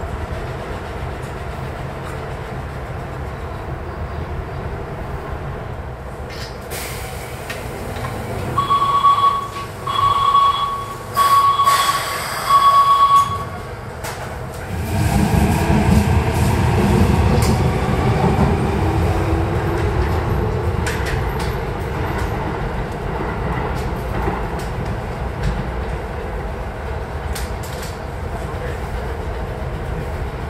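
Station platform sounds: a steady train rumble, then four loud one-note signal blasts of about a second each, then a train running along the platform with a gliding motor whine. Near the end, the split-flap departure board clatters as its flaps turn over to the next trains.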